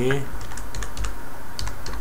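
Typing on a computer keyboard: a quick, irregular run of keystrokes that begins about a third of a second in.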